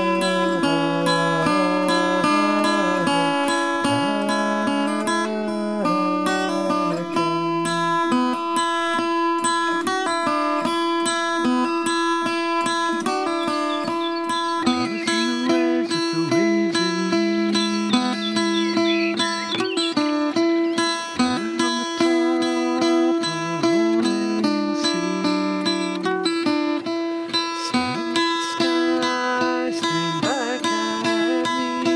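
Acoustic guitar fingerpicked in a quick, continuous run of plucked notes over one steady held low note.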